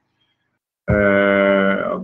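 Silence for almost a second, then a man's voice holding one long, steady hesitation vowel (a drawn-out "eeh") for about a second.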